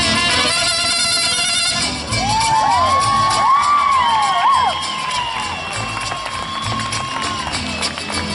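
A mariachi band of violins, trumpets and guitars plays the last notes of a song, which ends about two seconds in. Cheering and several long rising-and-falling whoops follow.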